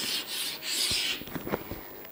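Chalk scraping across a chalkboard in drawn strokes as a box is drawn around an equation: one long stroke, then a shorter one about one and a half seconds in.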